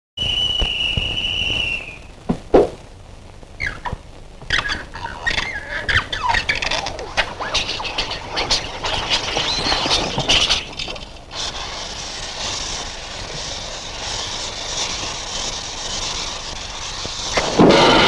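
Cartoon sound effects of a burning fuse. A high whistle holds for under two seconds, then comes a sharp click, then several seconds of crackling and squealing glides. About eleven seconds in it settles into a steady hiss, which music cuts off abruptly just before the end.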